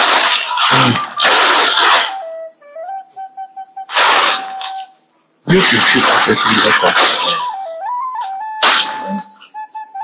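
Background film music: a slow melody on a single flute-like tone moving up and down in small steps, with several loud, short noisy bursts laid over it.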